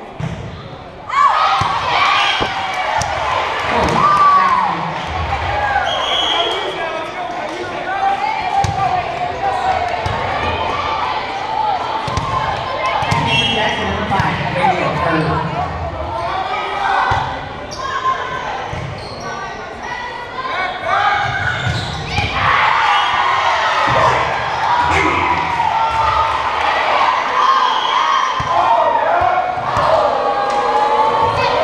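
Volleyball rally in a gymnasium: the ball being struck and bouncing on the hardwood court, among players calling out and spectators talking and shouting, all echoing in the hall.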